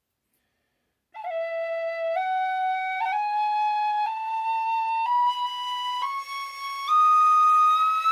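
A Generation tin whistle, cut down from B-flat to B, playing a slow rising E major scale about a second in, one note roughly every second, climbing an octave to the high E and holding it. This is a tuning check of the altered whistle's scale, which comes out pretty close to in tune.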